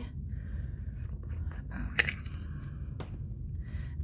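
A plastic embossing tray being handled and set down on a craft mat, with a light scraping rustle and a sharp click about two seconds in, then a lighter click about a second later.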